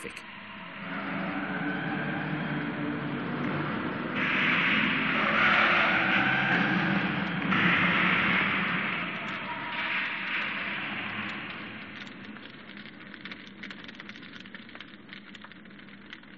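Noisy old newsreel soundtrack with a rough roar that swells, is loudest for several seconds in the middle, and fades away after about twelve seconds.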